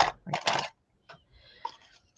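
A short scrape about half a second in, then a few faint clicks and taps as a paint container is handled.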